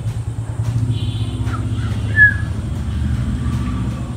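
A motorcycle engine running close by, a steady low rumble with an even pulse. There is a short high-pitched squeak about two seconds in.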